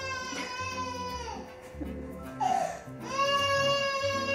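A woman making a high, whining mock-crying sound: one long held wail that sags at the end, a short breathy sob, then a second held wail. Soft background music plays underneath.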